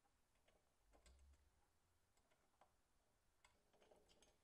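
Near silence, broken by faint scattered small clicks and taps of a metal mounting bracket and hardware being handled on an oil cooler.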